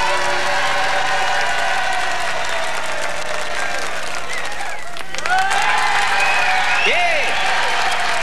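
Studio audience applauding after a song ends, with a voice coming through the applause in the second half.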